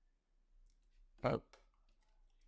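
A few faint computer mouse clicks, scattered and short, over quiet room tone, with one brief spoken word about a second in.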